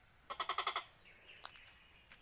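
Insects chirring steadily and high-pitched, with one short, rapidly pulsed animal call lasting about half a second near the start.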